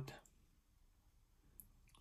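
Near silence: room tone, with one faint click about three-quarters of the way through.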